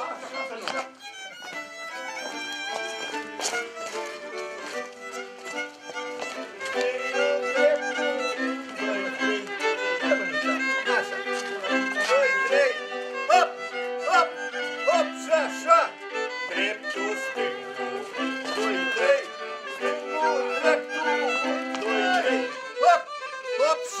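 Violin playing a lively folk dance tune, its melody running over a steady lower accompaniment line.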